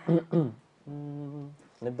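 A man's voice: a couple of quick spoken syllables, then one steady low hummed note held for about half a second, a singer setting his pitch just before starting a song.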